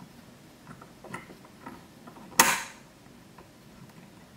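Light clicks and taps of hands working at a metal fly-tying vise, with one sharp clack a little past halfway. The vise had nearly let go of the hook.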